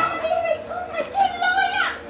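A high-pitched human voice, drawn out and wavering, ending in a sharp falling cry near the end.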